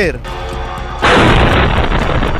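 A drone striking a building and exploding: a sudden loud blast about halfway through, its noise carrying on without a break, with background music underneath.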